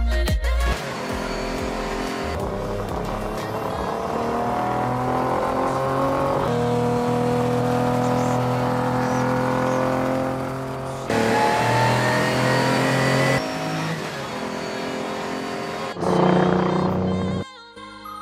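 Ferrari 250 LM's V12 engine pulling hard on a race track, its pitch climbing through the gears with a couple of drops at gear changes. Music plays along with it.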